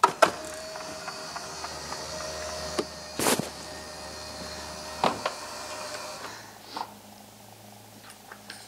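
Electric motor of a 2020 Ford Explorer's power-folding third-row seats, started with a button click and running with a steady hum as the seatbacks are raised. There is a loud clunk about three seconds in and a lighter knock about five seconds in, and the motor stops about six seconds in.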